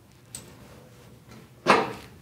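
Microphone handling noise from a clip-on microphone being moved lower on a jacket to cut feedback: a faint click, then a loud rustling knock near the end.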